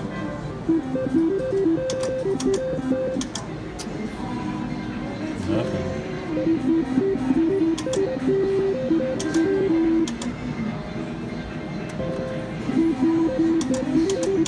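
Slot machine's electronic melody of short, stepping notes playing while the reels spin, with sharp clicks now and then, amid casino noise.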